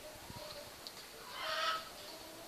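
A hen's single short, raspy call about a second and a half in, with a fainter chicken sound just before.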